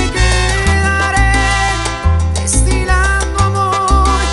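Salsa band playing an instrumental passage without vocals: accordion and brass holding melody notes over percussion and a bass line that steps between notes about every half second.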